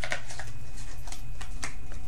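A small deck of divination cards being shuffled and handled in the hands: a string of short, crisp card clicks and snaps, about seven in two seconds, over a steady low hum.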